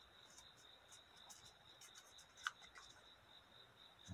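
Faint crinkling and ticking of folded origami paper being pressed and handled, with one slightly louder crisp tick about two and a half seconds in, over a faint steady high whine.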